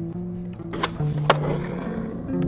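Skateboard hitting concrete twice, two sharp clacks about half a second apart, over background music.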